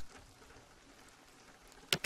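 Faint background rain ambience, a soft steady hiss, with a single sharp click near the end, a transition sound effect.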